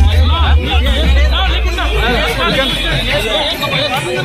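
Crowd chatter: many people talking over one another close around the microphone, with music in the background.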